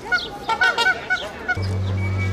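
Canada goose honking: a quick run of short, nasal honks. About a second and a half in, the honking gives way to a steady low hum.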